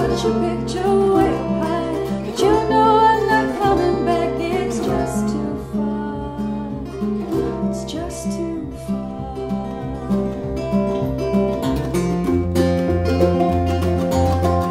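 Acoustic bluegrass-style string band (acoustic guitars, mandolin, banjo, dobro) playing, with a woman singing lead over it for the first few seconds. After that the plucked strings carry on alone, and heavier low bass notes come in about twelve seconds in.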